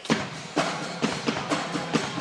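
Pep band drums starting up suddenly and playing a steady beat of bass and snare drum strikes, about two a second.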